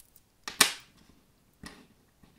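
Small letter tiles and metal charms being set down on a tabletop board: a sharp click about half a second in and a softer one near the end.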